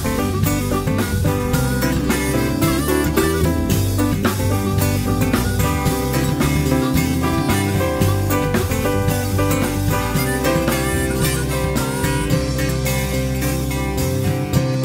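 Instrumental passage of a folk-pop band recording, with guitar over a steady drum-kit beat and no vocals.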